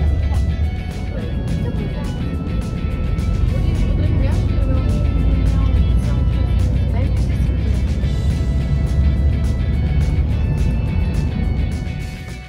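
Background music over the steady low rumble of a bus driving, heard from inside the bus.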